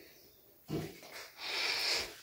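A person's breath noises: a short low snort about three-quarters of a second in, then a long breathy hiss near the end.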